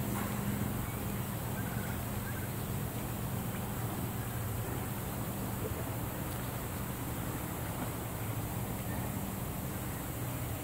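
A steady low hum over an even hiss, with no distinct events.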